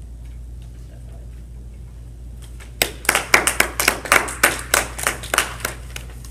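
A brief round of hand clapping. It starts about three seconds in and lasts about three seconds, at a quick, fairly even pace of around five or six claps a second.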